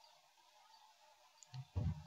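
Faint clicks of computer keys and a mouse as a value is typed into a dialog, over a faint steady hum, then two short, louder low thumps near the end.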